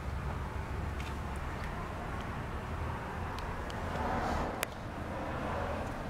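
A steady low background rumble, with a few light clicks and a brief rustle about four seconds in, typical of handling noise.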